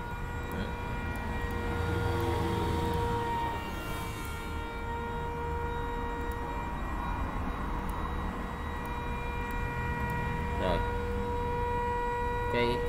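A steady machine hum: one held tone with its overtones over a low rumble, unbroken throughout.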